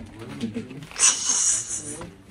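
Low voices in a small, enclosed room, then about a second in a loud, hissy rush that lasts just under a second and stops.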